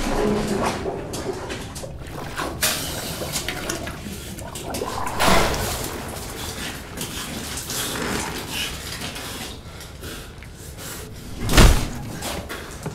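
Water splashing as a person's head is forced into water and pulled back out, in irregular surges, with a loud splash just before the end as the head comes up.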